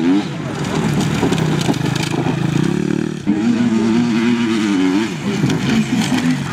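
Enduro motorcycle engine revving hard on a dirt track, its pitch rising and falling with the throttle.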